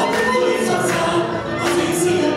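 A man and a woman singing a Hungarian magyar nóta duet, accompanied by a Gypsy band of violins, double bass and cimbalom.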